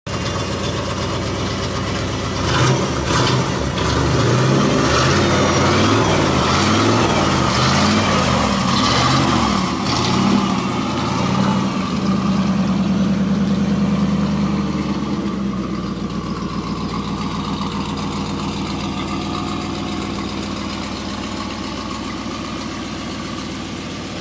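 A 1959 Chevrolet Impala's 348 big-block V8 with Tri-Power carburetion running: its speed rises and falls several times under throttle, holds at a higher steady speed for a few seconds, then drops back to a steady idle about two-thirds of the way in.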